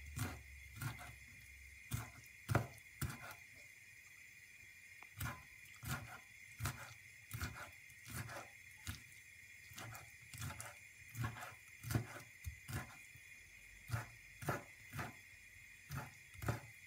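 Kitchen knife chopping raw shrimp on a wooden cutting board: single knocks of the blade on the board at an uneven pace, about one or two a second, with a short pause about three seconds in.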